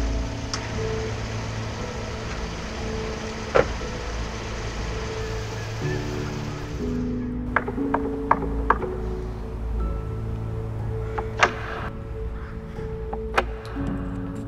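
Background music with long held notes, over a car engine idling during the first half. About eight seconds in, a quick series of knocks on a door; a few other single sharp hits stand out, the loudest about three and a half seconds in.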